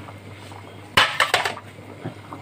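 Metal kitchenware clattering: a sharp knock about a second in, followed by a few lighter clinks.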